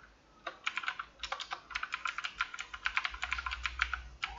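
Typing on a computer keyboard: a quick, irregular run of key clicks that starts about half a second in.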